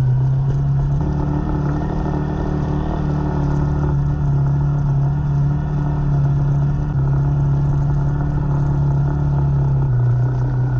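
Motorcycle engine running steadily at low, even throttle while the bike rolls along slowly, with road and wind noise underneath. The engine note changes slightly about a second in and again about seven seconds in.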